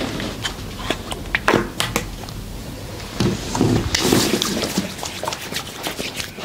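Hands massaging bare skin: irregular slaps and taps, with a louder rubbing swish about four seconds in.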